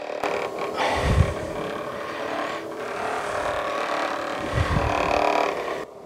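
Handheld electric vibration massager running steadily against a patient's back, a continuous mechanical buzz, with a deeper rumble swelling briefly about a second in and again near the end. The vibration is used to relax the back muscles before a chiropractic adjustment.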